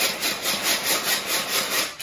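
Tupperware Extra Chef pull-cord chopper chopping fresh parsley: the cord pulled out again and again in a quick even rhythm of about four to five pulls a second, each pull a rasping whir of the blades spinning through the herbs.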